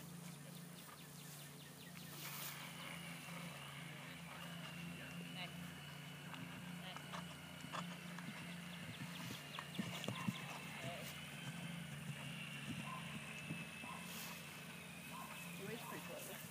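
Faint hoofbeats of a horse cantering on grass, over a low steady background hum. A thin, high, steady tone comes in about two seconds in and fades out near the end.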